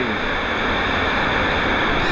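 Steady rush of water flowing down a fibreglass water-slide channel, heard from a raft riding in it.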